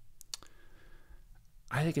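A quiet pause with a few faint, sharp clicks in the first half second, then a man starts speaking near the end.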